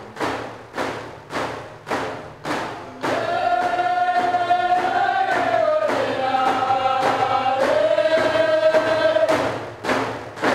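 Steady drum beats, about two a second, then from about three seconds in a chant-like song with long held notes that slide between pitches.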